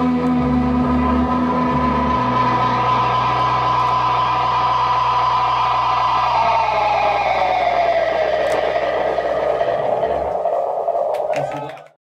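Amplified electric guitars ringing out in a sustained, noisy wash as a live rock song ends, with low notes held under it. A high held tone slides down in pitch about six seconds in, and the sound fades out just before the end with a few clicks.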